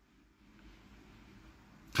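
Near silence: faint room tone in a pause between spoken sentences, with a man's voice starting again at the very end.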